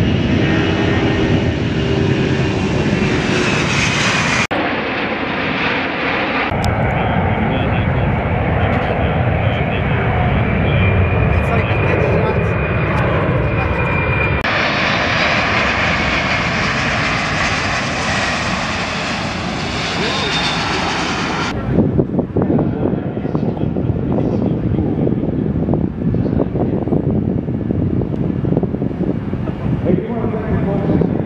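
Boeing C-17 Globemaster III's four turbofan engines running as the transport jet rolls on the runway and flies low past with its gear down, a steady whine over a deep rumble. The sound changes abruptly several times where the footage is cut.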